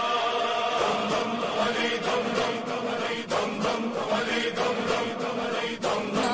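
A young man's voice chanting an Urdu qasida, a devotional praise poem for Imam Ali, in a sustained melodic recitation with layered backing voices.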